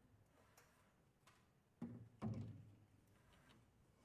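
Quiet, sparse knocks and taps from inside an open grand piano, each with a short low ring from the strings and body. Two louder ones come close together about two seconds in.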